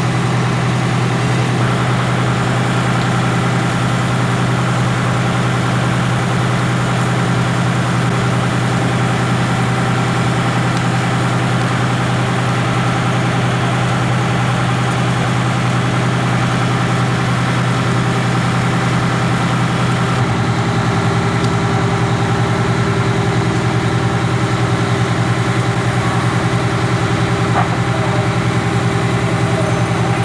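Fire truck engine running at a steady speed, a loud low drone; its pitch shifts slightly about twenty seconds in.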